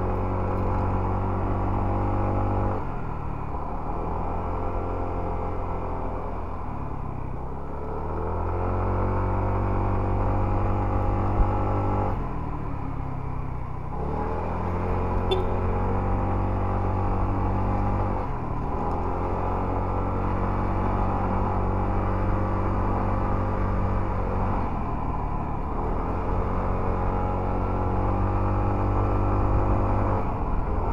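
Motorcycle engine running under way, its note dropping and climbing back again about six times.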